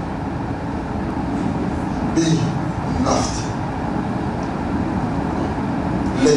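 A steady low rumbling noise with no clear pitch. A man says a couple of short words into a microphone about two and three seconds in.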